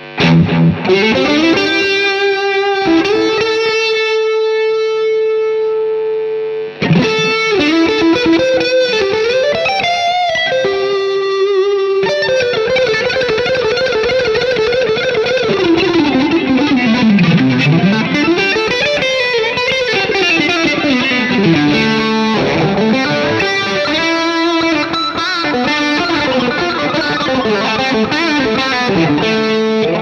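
Electric guitar played through high-gain distortion: a long sustained note in the first few seconds, then fast shred-style runs that sweep down and back up in pitch.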